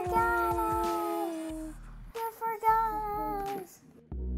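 Two children humming long, slowly falling tones together as vocal flying sound effects for a toy gunship, fading out before halfway, then one child humming a shorter wavering tone near the end.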